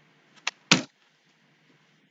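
Two sharp hand slaps about a third of a second apart, the second louder.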